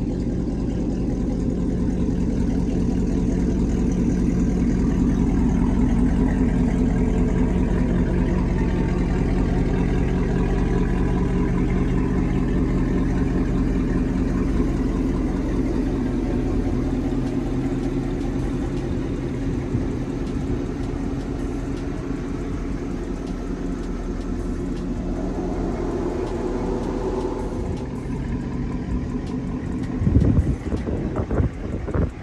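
LS-swapped V8 engine in a 1962 Lincoln Continental idling as the car creeps slowly along. The level swells over the first several seconds, then eases off gradually.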